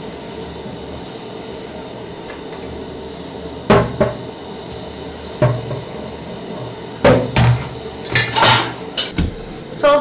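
Aluminium cooking pot knocking and clanking against a metal sink as boiled macaroni is drained, over a steady hiss. The knocks start about four seconds in and come thickest near the end.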